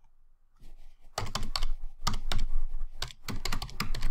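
Typing on a computer keyboard: a quick, uneven run of key presses that starts about a second in.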